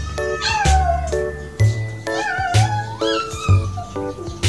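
A cat meowing twice in long, drawn-out calls over background music with a steady beat.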